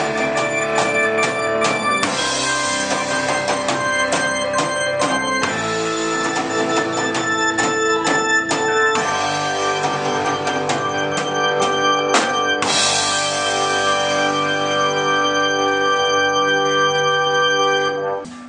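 A live band playing: a drum kit under held chords that change every few seconds. The music stops right at the end.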